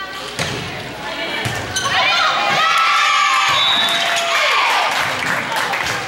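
Indoor volleyball rally: a few sharp hits of the ball in the first two seconds. Then, from about two seconds in, loud, high-pitched shouting and cheering from players and spectators as the point is won.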